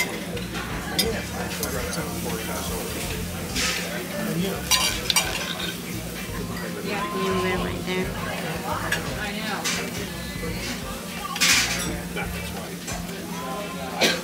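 A steel knife and fork cutting a steak on a ceramic plate: scraping, with a few sharp clinks of cutlery against the plate, the sharpest near the end. A steady low hum and faint voices sit in the background.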